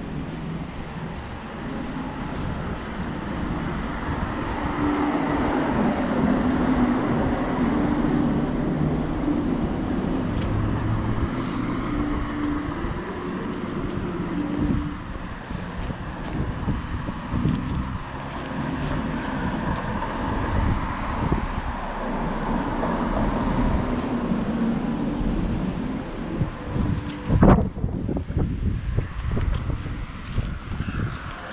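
Street traffic: car engines running and tyres passing along the road, with a steady hum that swells over several seconds and fades, twice. A sharp knock comes a few seconds before the end.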